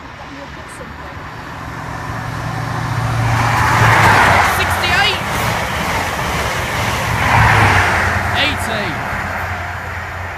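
Grand Central InterCity 125 with Class 43 diesel power cars passing through at speed. The engine drone and wheel-on-rail noise swell to a peak as the leading power car passes about four seconds in. A second peak comes as the trailing power car goes by about seven and a half seconds in, then the noise fades.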